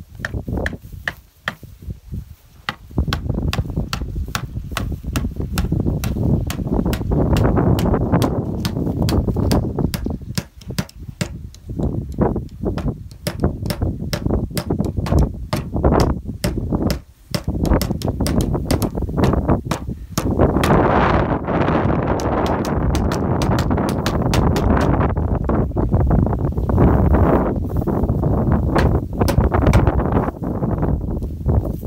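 Wind buffeting the microphone and tall grass brushing against it as the camera moves, with many sharp clicks throughout.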